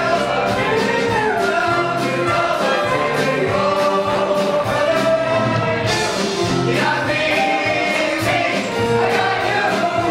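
A stage-musical ensemble number: a large cast singing together in chorus over instrumental accompaniment, the sound turning brighter about six seconds in.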